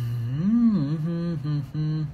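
A man humming with closed lips: a short tune that rises and falls once, then holds a few level notes with brief breaks between them.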